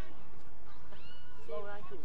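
Players' voices calling out across an open football ground: one long drawn-out shout about a second in, then more shouted calls near the end.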